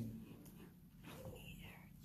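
Near silence: quiet room tone with a low steady hum, and a faint soft voice-like murmur a little past the middle.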